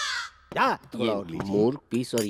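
A man's voice speaking a line of Hindi film dialogue, opening with a short hissing breath.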